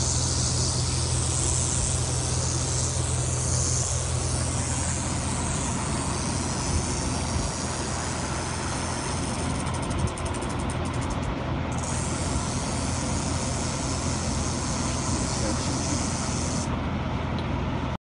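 Western diamondback rattlesnake rattling its tail as a defensive warning: a continuous high buzz that stops abruptly near the end. Under it runs a steady low engine hum.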